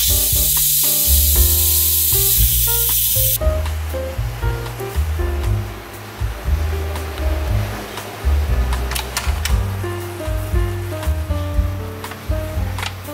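Steam hissing out of an electric pressure cooker's release valve, pushed open with chopsticks to let out the remaining pressure before the lid is opened; the loud hiss lasts about three and a half seconds and then cuts off suddenly. Background music plays throughout.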